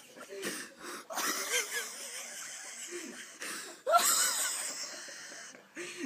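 Wheezing, breathless human laughter in a small room, with a sudden louder, higher-pitched outburst about four seconds in.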